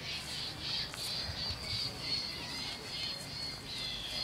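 Quiet outdoor ambience with birds chirping and a steady high background hum.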